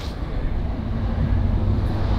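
Steady low rumble of street traffic, with a faint steady hum through the middle.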